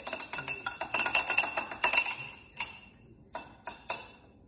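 Spoon clinking rapidly against glass jars while Dijon mustard is spooned in, the glass ringing, for about two seconds; then a few separate taps.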